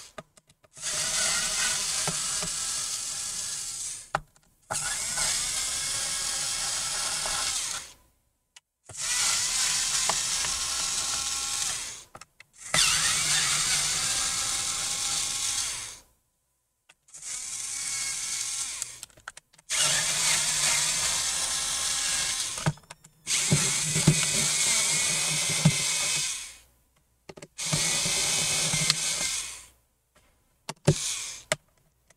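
Electric screwdriver backing Phillips screws out of a laptop's bottom cover: its small motor whirs in about eight runs of two to four seconds each, with short pauses between as it moves from screw to screw and a few sharp clicks.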